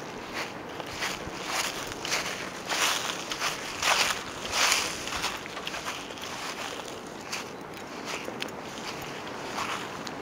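Footsteps swishing through lawn grass, an uneven series of rushing scuffs that is loudest in the first half, with some wind noise on the microphone.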